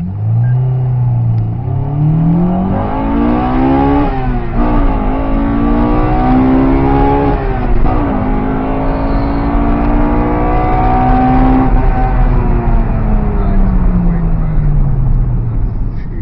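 Honda Integra Type R DC2's 1.8-litre VTEC four-cylinder, breathing through a Mugen air box and a Toda 4-2-1 manifold into a Mugen centre pipe and twin-loop exhaust, heard from inside the cabin accelerating hard: revs climb and drop at two upshifts, about 4 and 8 seconds in, then hold nearly steady before falling away smoothly as the throttle comes off.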